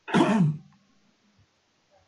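A man briefly clearing his throat, one short loud burst lasting about half a second.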